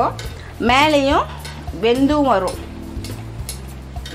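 An appam sizzling as it deep-fries in a kadai of hot oil, with a perforated steel ladle scooping oil over it. A background song with a wavering sung voice plays twice over the frying and is louder than it.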